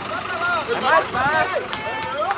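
Several people's voices talking over one another, with a city bus's engine running close by.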